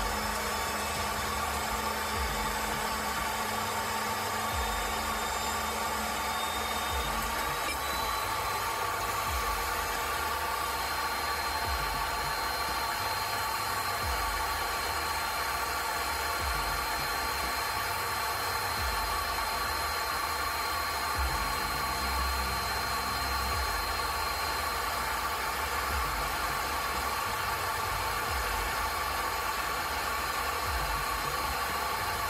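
Electric pipe threading machine running steadily, its die head cutting a thread on a metal pipe as chips come off, with a steady motor hum and low rumble.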